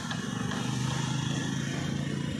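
A motor vehicle engine running close by, a low rapid chugging, over a steady hiss from the heap of burnt shell lime steaming as it is slaked with water.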